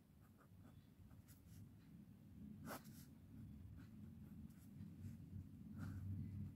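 A pen scratching faintly on paper in short strokes as lines and arrowheads are drawn, with one firmer stroke near the middle, over a low steady hum.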